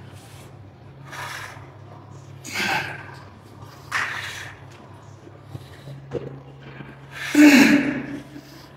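A man breathing out hard through a set of heavy incline dumbbell presses, one short forceful exhale with each rep. The last exhale, near the end, is the loudest and is strained into a grunt.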